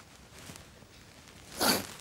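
Quiet room tone, broken about a second and a half in by one short, breathy, rustling noise close to the microphone.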